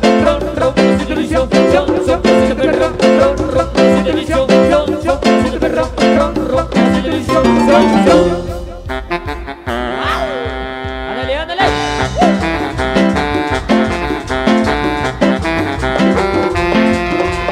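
Live dance band playing up-tempo Latin dance music on drum kit and electronic keyboard. About eight and a half seconds in, the beat drops out for a few seconds of held chords with sliding pitches, and the full rhythm comes back about twelve seconds in.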